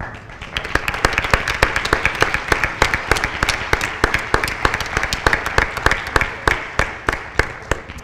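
Audience applauding: many hands clapping, starting a moment in and carrying on until speech resumes.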